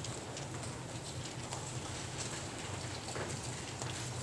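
Bible pages being turned at a lectern microphone: faint, scattered ticks and rustles over a steady low room hum.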